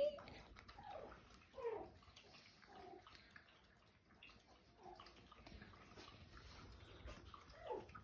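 Two-week-old Morkie puppies giving a few faint, short squeaks, several of them falling in pitch.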